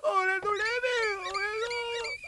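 A young man's high-pitched, drawn-out excited cry with no words, wavering in pitch, with a short break about half a second in.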